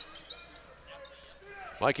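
Faint game sound of a basketball being dribbled on a hardwood court, with low crowd murmur in a large arena. A man's commentary voice comes in near the end.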